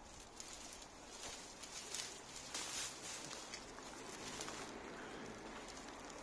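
Dry, tangled shrub branches rustling and crackling as they are pulled about and cut with loppers, with several short snaps in the first few seconds.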